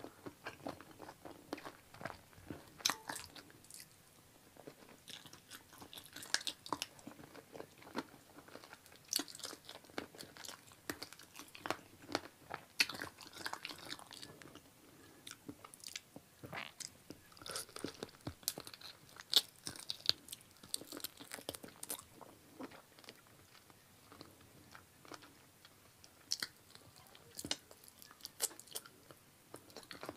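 Close-miked eating of chicken feet in curry sauce: irregular small crunches, clicks and crackles of biting and chewing the skin and cartilage off the bones, coming off and on throughout.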